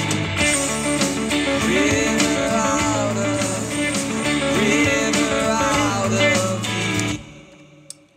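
Electric guitar playing a fast sixteenth-note ostinato through the chord changes, with a little overdrive grit from a Jetter Gold Standard pedal, over a full backing mix with bass. The music stops abruptly about seven seconds in.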